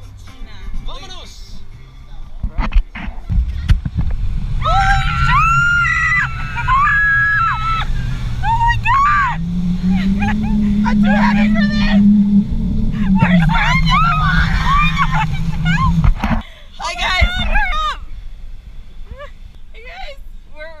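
Background music with a singing voice over a sustained low accompaniment, cutting off abruptly about 16 seconds in.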